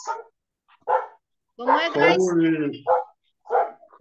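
A dog barking in short bursts, a couple of times, behind the voices, heard through a video call's audio.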